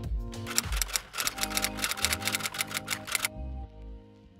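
Background music with a rapid run of typewriter key clicks, about nine a second, that starts about a second in and stops abruptly just past three seconds, a typing sound effect.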